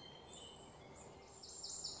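Faint outdoor ambience with a few brief, high chirps scattered through it.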